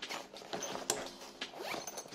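Zipper on a sling bag's back pocket being pulled in several short rasping strokes, the last one sliding upward near the end.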